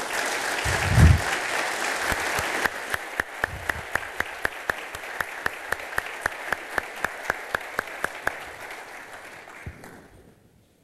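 Audience applauding, dying away near the end. From about three seconds in, one person's claps stand out at a steady beat of about four a second. A low thump about a second in is the loudest moment.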